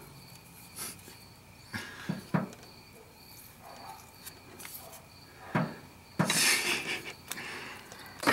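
A few light knocks and clicks of hands working at a car engine's valve cover, then a short rustling scrape about six seconds in.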